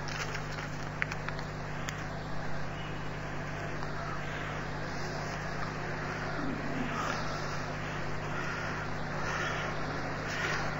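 Steady background hiss with a low, even hum from the recording, and a faint click about a second in.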